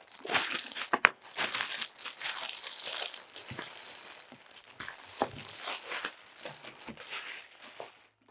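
Clear plastic wrap crinkling and tearing as it is cut with scissors and pulled off a package, with a sharp click about a second in.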